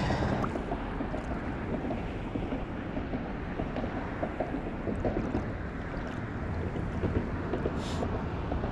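Wind buffeting the microphone, a steady low rumbling noise with a few faint ticks.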